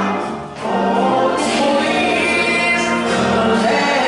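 Gospel choir singing in full voice, with a brief dip between phrases about half a second in.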